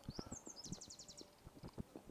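A small bird chirping faintly, a quick run of about a dozen high notes in the first half and a few more near the end, over soft irregular taps.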